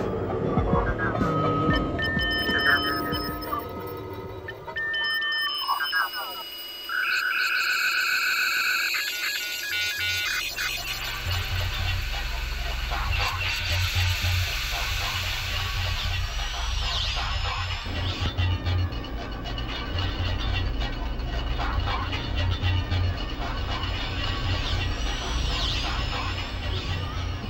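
Electronic music: synthesized tones, short beeping tone bursts and pitch sweeps, joined about ten seconds in by a pulsing low bass rhythm.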